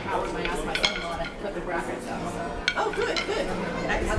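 Indistinct chatter of several people, with a few sharp clinks and knocks scattered through it.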